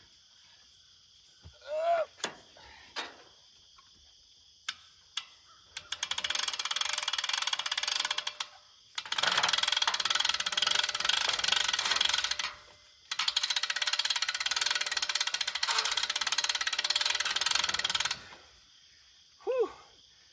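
Hand-crank winch on a hog trap ratcheting rapidly as it is cranked, winding in the cable to lift the trap gate. The cranking comes in three runs with short pauses, starting about six seconds in.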